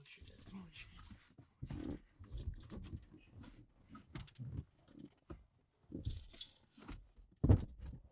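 A person's muffled voice making wordless sounds in irregular bursts, with the loudest one about seven and a half seconds in.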